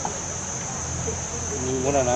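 A steady, high-pitched drone of insects calling in chorus, with a person's voice heard briefly near the end.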